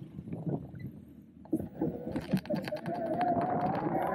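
A bicycle being ridden off: knocks and rattles from the frame and luggage over the bumps, then tyre and wind noise building from about halfway, with a faint whine that rises slowly in pitch as it picks up speed.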